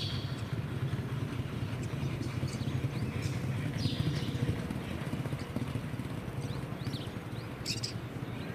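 Hoofbeats of two racehorses galloping on turf, loudest as they pass close by about halfway through.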